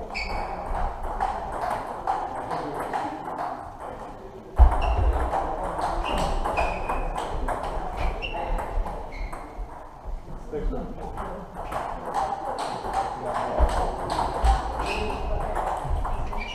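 Table tennis balls clicking on bats and tables: a quick, irregular run of light, sharp ticks, some with a short high ring, over a murmur of voices in a large hall.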